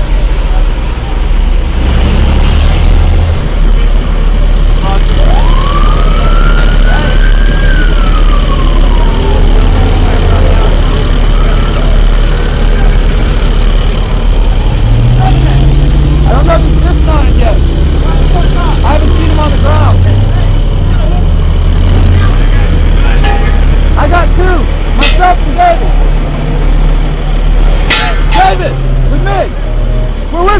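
Heavy vehicle engine running loudly with a deep, steady rumble. About five seconds in, a single siren-like wail rises and falls over roughly three seconds, and there are sharp clicks near the end.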